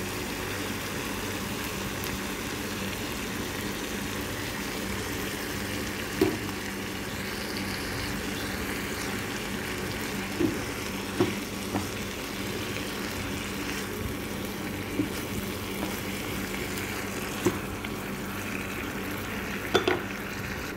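Sliced carrots and green peppers sizzling steadily in a non-stick frying pan with oyster sauce, over a faint steady low hum. A few short sharp taps of a utensil against the pan come about six seconds in, around ten to twelve seconds, and near the end.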